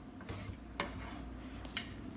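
A few faint, short clicks and knocks of kitchen handling at a wooden cutting board, over a low steady background.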